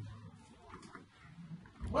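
Quiet room tone with a faint low hum, then, near the end, a short deep thump of handling noise as the recording phone is moved.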